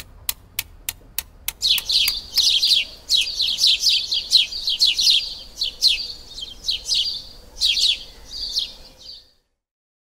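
Small songbird chirping in quick, repeated high chirps, starting about a second and a half in and cutting off suddenly near the end. Before the chirps start, a row of evenly spaced ticks, about three a second.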